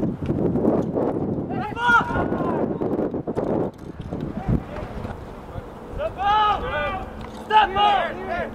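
Men's voices shouting across a soccer pitch during play: one call about two seconds in and a burst of calls near the end. A low rush of noise fills the first few seconds, then drops away.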